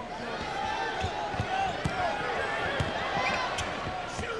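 Basketball dribbled on a hardwood arena floor, about two bounces a second, over a murmur of crowd voices.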